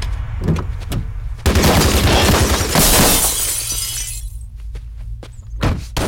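Film gunfight sound effects: about a second and a half in, a sudden loud crash bursts out with shattering and breaking, fading away over the next two seconds over a steady low rumble. A few sharp impacts follow near the end.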